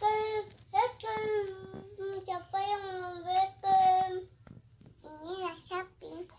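A toddler singing in long, high held notes that waver slightly, phrase after phrase with short breaks, then a pause about four seconds in and a shorter, wobbling phrase near the end.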